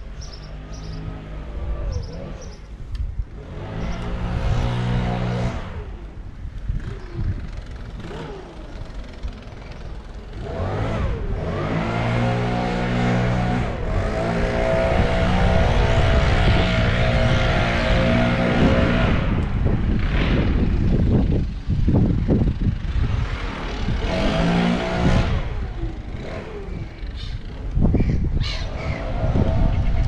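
The motor of a small vehicle carrying the camera, running and rising in pitch each time it speeds up, several times over. Wind rumbles on the microphone throughout.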